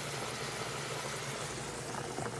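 Steady hiss and bubbling of cooking on a stovetop: onions sizzling in olive oil in a stainless pan and a pot of pasta water at a rolling boil.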